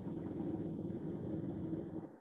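Steady low hum and rumble of background noise picked up by an open microphone on a video call.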